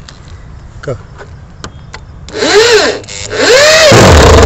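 Cordless drill-driver driving screws into timber, in two runs: one about two seconds in and a longer one near the end. In each run the motor's pitch rises and then falls. A few light knocks come before the first run.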